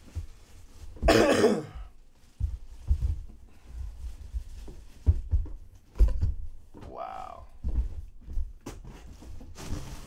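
A person coughs once, about a second in. After that, a cardboard box and its plastic wrapping are handled, with a string of short low thumps and light rustling.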